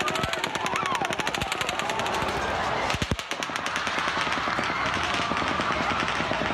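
Sustained rapid gunfire from a bump-fired rifle, shots following each other many times a second at an automatic-weapon rate, with a brief break about three seconds in.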